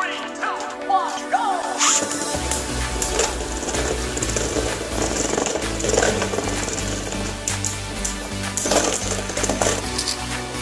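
Background music, with sharp clacks of Beyblade spinning tops. The tops launch into a plastic stadium about two seconds in and strike each other again near six and nine seconds.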